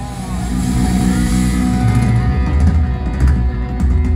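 Live rock band playing loudly, heard from within the audience: electric guitar and bass held over a heavy low end, with sharp drum strikes near the end.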